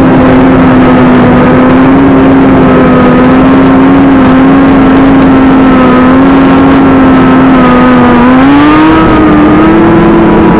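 Sport motorcycle engine running at steady high revs at freeway speed, with heavy wind rush on the microphone. The revs climb briefly about eight seconds in.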